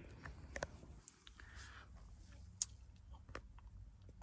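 Very quiet room tone with a low hum and a few faint clicks.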